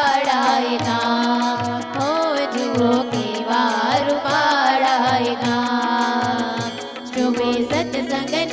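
Live devotional bhajan: a woman's voice sings a winding melody over a steady held keyboard tone, while a tabla keeps a regular rhythm with low bass-drum strokes about twice a second.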